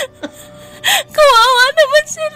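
A young female voice sobbing: two sharp gasping breaths, then a high, wavering crying voice from a little past the first second.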